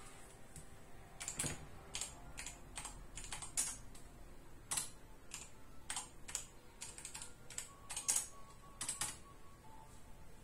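Typing on a computer keyboard: irregular key clicks, with a few louder strokes among them.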